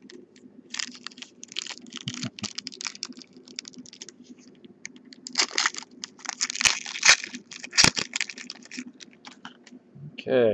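Foil wrapper of a trading-card pack crinkling and tearing as it is opened by hand, a dense run of crackles that is loudest about five to eight seconds in, with a few sharp snaps. A faint steady low hum runs underneath.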